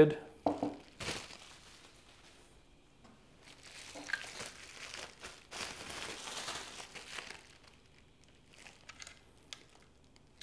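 Plastic packaging sleeve crinkling as a printer pylon is slid out of it: a short rustle about a second in, then a longer spell of crinkling in the middle, with a few faint clicks near the end.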